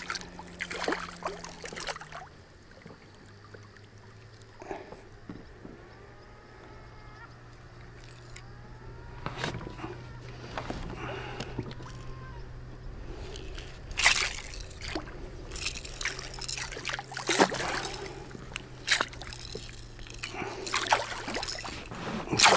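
Hooked pike thrashing at the surface beside the boat while being played on the line, water slopping and splashing. Sharp splashes come in a cluster through the second half, over a low steady hum.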